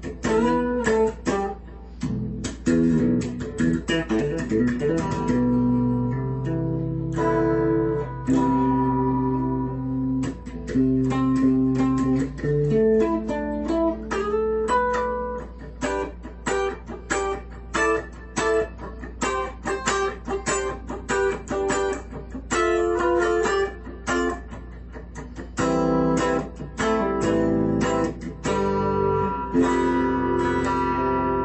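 Homemade nine-string fanned-fret electric guitar played clean on its middle pickup, through a small Fender Champ XD amp with light compression. Quick runs of single notes are mixed with a few longer held low notes.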